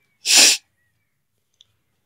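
A person's single short, loud burst of breath, about a quarter second in.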